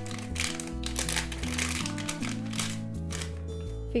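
A crinkly polypropylene blind-box inner bag crinkling as it is handled and opened, over background music.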